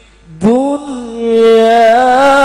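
A man's voice reciting the Qur'an in melodic tilawah style. After a short pause for breath, a new phrase starts about half a second in, rising into one long held, gently wavering note.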